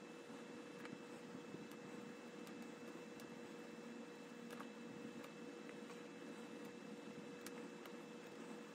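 Faint, steady room hum with a few soft ticks and scratches of a felt-tip marker colouring in small shapes on a paper chart.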